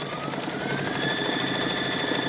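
Brother Luminaire embroidery machine starting to stitch, its motor whine rising in pitch over about the first second as it comes up to speed, then running steadily with rapid needle strokes.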